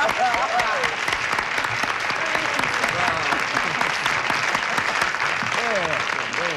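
Studio audience applauding steadily, greeting a contestant's winning answer in the game's final round, with a few voices heard over the clapping in the first second.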